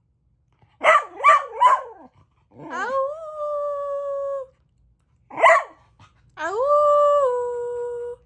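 Australian Shepherd "talking": three quick yelps, then a long call that rises and holds steady, a single short bark, and a second long rising call that holds and then steps down in pitch.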